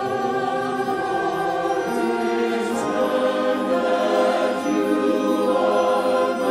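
A mixed church choir of men's and women's voices singing an anthem in sustained chords with accompaniment.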